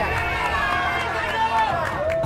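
A person's voice in one long drawn-out call, slightly falling near the end, over crowd noise.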